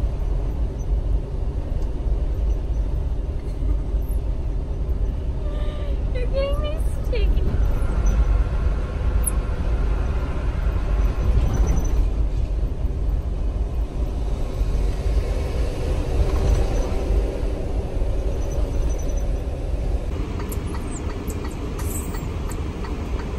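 Steady low road and engine rumble heard from inside a moving vehicle's cab, with a short run of wavering squeaky sounds about six to seven seconds in.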